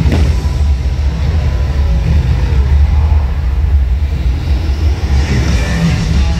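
Loud show soundtrack over outdoor loudspeakers: a sudden burst at the start as a pyrotechnic flame flares, then a deep steady rumble of car-engine revving effects.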